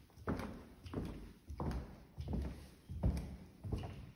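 Footsteps of wedge-heeled sandals on bare wooden floorboards, a steady walking pace of just under two steps a second.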